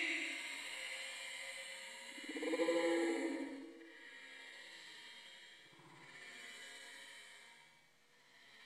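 A woman's voice making long, wordless vocal sounds: a loud drawn-out stretch at the start and another about two and a half seconds in, then fading to faint.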